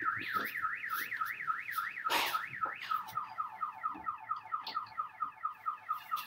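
Electronic siren-style alarm, of the kind a car alarm makes, cycling through rapid rising-and-falling sweeps about four a second, then switching about halfway through to quicker falling chirps. A short hiss cuts across it about two seconds in.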